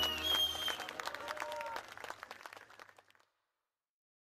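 A live band's final notes ring out over audience applause, the sound fading away to silence about three seconds in.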